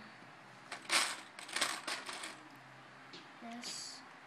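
Loose plastic Lego bricks clattering and clicking against each other, a quick run of sharp clicks lasting about a second and a half, as pieces are picked over for the next part of the build.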